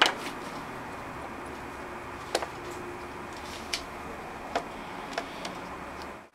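Light handling clicks and taps as the opened MacBook Pro 13-inch's aluminium unibody case is moved and turned around on a desk: one sharp click at the start, then about five small scattered clicks over a steady low hiss.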